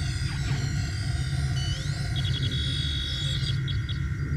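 Synthesized sci-fi sound effects of an exocomp repair robot at work: a steady low hum under two held high electronic tones. A rising chirp comes about a second and a half in, followed by a quick run of short beeps.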